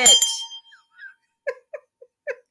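A small handbell rung once more, its ring dying away within the first second as a spoken word ends. Then a woman giggles in short, evenly spaced bursts.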